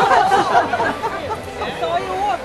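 Several people chattering over one another.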